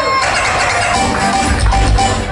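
Live band music on keyboard, with a heavy bass beat coming in about a second and a half in.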